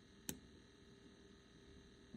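Near silence: quiet room tone, with one brief click about a third of a second in.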